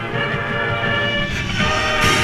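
Marching band brass holding a sustained chord that swells louder, with a short percussion stroke about a second and a half in.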